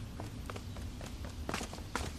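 A few soft footsteps and light taps over a low, steady room hum, slightly louder about a second and a half in.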